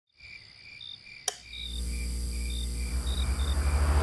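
Crickets chirping in a steady, even rhythm, with a single sharp click about a second in. A deep low drone then comes in and swells louder toward the end.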